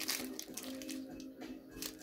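Quiet background music with steady held notes, over a few faint crinkles and clicks from foil booster packs being handled.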